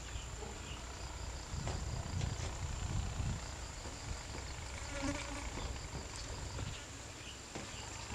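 Outdoor ambience: a low rumble, a steady high whine, and a brief insect buzz about five seconds in.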